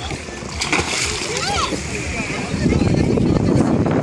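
Splashing in shallow sea water as children snorkel and kick at the surface, with a few short shouts of voices in the background. From about two and a half seconds in the splashing and water noise grow louder and rougher.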